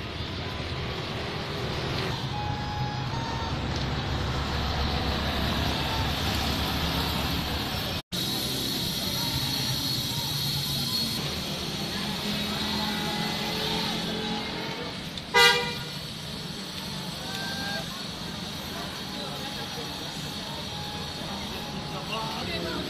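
Street traffic running steadily, with faint voices, and one short vehicle-horn toot about two-thirds of the way through, the loudest sound. The sound drops out for a split second about eight seconds in.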